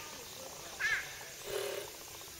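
Outdoor background with one short, high, arching call about a second in. A low steady hum sets in near the end.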